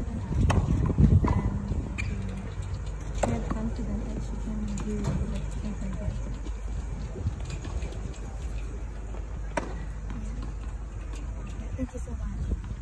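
Steady low rumble on an outdoor microphone with faint talk underneath, broken by a few isolated sharp knocks.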